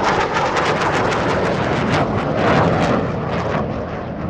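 Logo-intro sound effect: a loud, sustained jet-like rush of noise with crackle through it, beginning to fade near the end.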